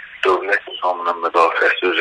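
Speech only: a voice speaking Azerbaijani continuously in a narrow-band, phone-quality recording.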